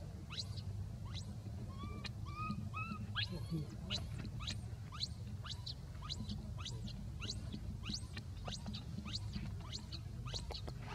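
Baby macaque giving three short coo calls, each rising then falling, in quick succession about two seconds in. Around them runs a steady stream of high, sharply falling chirps, two to three a second, over a low steady background hum.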